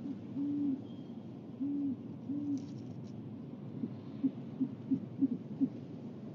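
Great horned owl hooting: three longer, low hoots followed by a quicker run of six short hoots.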